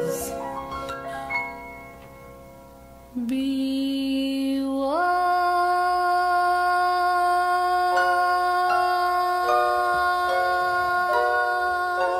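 Music from a recorded Christmas song, with no words sung here. It opens with a run of rising notes that fade away, then goes quiet, and a long held chord swells in about five seconds in, with lower notes changing beneath it.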